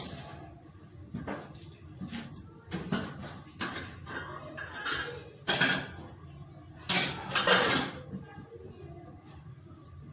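A metal spoon knocking and scraping in an aluminium cooking pot as soup is stirred, with a pot lid clattering. Irregular clinks come about once a second, and the loudest come a little past the middle.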